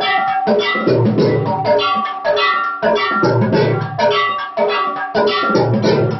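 Temple aarti music: drums beaten in a repeating rhythm, with heavy low beats about every two seconds, under steadily ringing metal bells or gongs.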